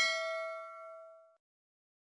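A notification-bell ding sound effect: one bright, bell-like chime that rings out and fades away over about a second and a half.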